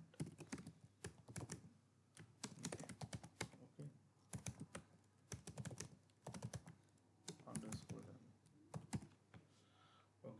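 Faint computer keyboard typing in short runs of keystrokes with brief pauses between them.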